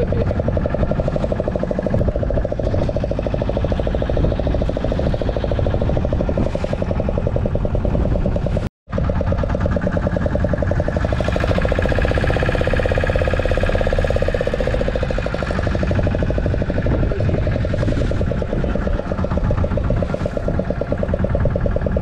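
A fishing boat's engine running steadily under a low rumble of wind and sea. The sound cuts out completely for a moment about nine seconds in.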